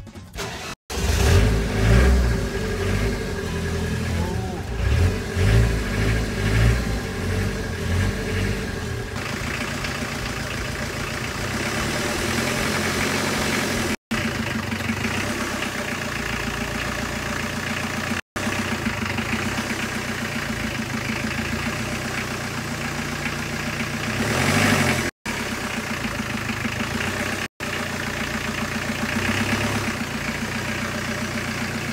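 Diesel engine in a 1966 Ford Zephyr Mk3 pickup starting after its glow plugs have been heated: it catches about a second in and runs unevenly with a lumpy low beat for several seconds, then settles into a steady idle, with a brief swell in engine speed near the end.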